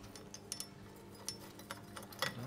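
Several light metallic clicks and clinks as hardware is handled at a stainless exhaust pipe flange joint under the car, over a faint steady hum.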